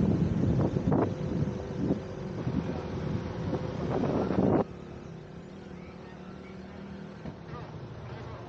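Jeep engine running steadily as it drives, heard from its open back with wind on the microphone. The first half is louder and busier, with knocks and some voices, and the level drops suddenly a little over halfway through to a quieter steady engine hum.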